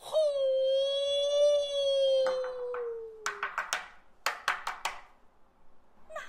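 A Kun opera singer holds one long sung note that slowly sinks in pitch. Near its end comes a string of quick plucked pipa notes in two short runs.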